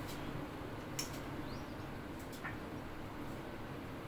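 A few faint clicks of a steel spoon against a small glass bowl as desi ghee is spooned into a kadai, over a steady low background hiss.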